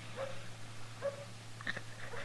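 A wounded man's short pained whimpers and gasping breaths, three brief ones, after being shot in a gunfight, over the steady low hum of the old radio recording.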